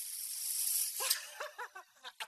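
Nitrous oxide gas hissing steadily as a man inhales it through a mouthpiece, cutting off about a second in as he breaks into short giggling laughter.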